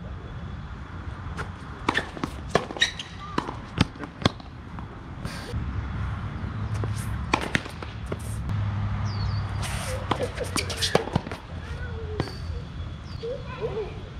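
Tennis balls struck by rackets and bouncing on a hard court during rallies: a series of sharp pops at irregular intervals, with a low rumble underneath through the middle.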